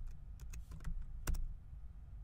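A few keystrokes on a computer keyboard, typing a short command, with the strongest click about a second and a half in as it is entered. A steady low hum runs underneath.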